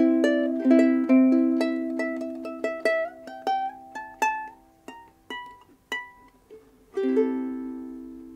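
A 2003 Kamaka HF-1D deluxe soprano ukulele being played: strummed chords for the first three seconds, then single plucked notes climbing higher one at a time, and a last chord about seven seconds in left to ring out and fade.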